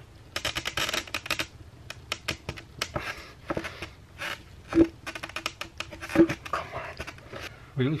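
A skateboard wheel being twisted and pried against the truck axle to force out its old, stuck bearing: irregular scraping, clicking and creaking of urethane, metal and a plastic glove. There are two brief squeaks near the middle.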